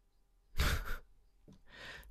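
A man sighs into a close microphone: a short breathy exhale about half a second in, then a faint breath in near the end.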